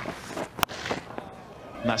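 One sharp crack of a cricket bat striking the ball, about half a second in, over faint ground ambience.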